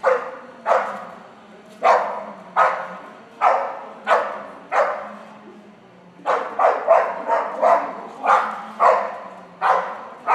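Boxer dog barking repeatedly, about fifteen barks spaced half a second to a second apart. There is a short pause around the middle, then a quicker run of barks.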